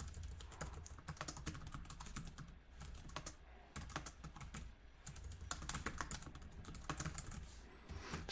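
Computer keyboard typing: a fast, irregular run of faint key clicks as a line of text is typed, over a low steady hum.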